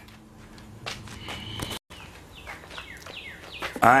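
Birds chirping, a run of short falling calls in the second half. Before that, a faint low hum runs and cuts off abruptly about two seconds in.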